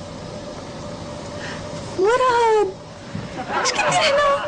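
A single meow-like cry about two seconds in, lasting just over half a second, its pitch rising and then falling, heard over a steady low hum. Voices come in near the end.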